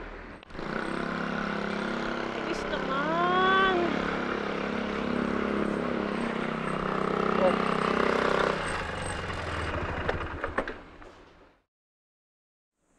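A motorcycle engine running amid street noise, with one drawn-out call from a voice that rises and then falls about three seconds in. The noise drops off about nine seconds in and cuts off suddenly shortly before the end.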